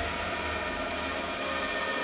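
Electronic dance music in a breakdown: a sustained, noisy synth wash with the kick drum dropped out and the bass thinned.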